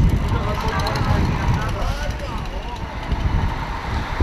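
Street ambience: several people talk in the background over a continuous, uneven low rumble.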